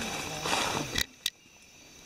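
Night forest insects, crickets, trilling steadily as high thin tones, with people talking quietly. About a second in come two sharp clicks, and then the sound drops to a low hush.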